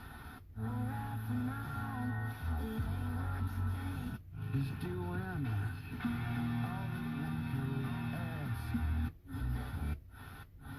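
Car FM radio playing music from broadcast stations, cut by short silent gaps as the tuner steps from one frequency to the next.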